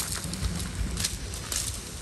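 Sharp taps, like steps, about twice a second over a low steady hum, in a field-recording-like track.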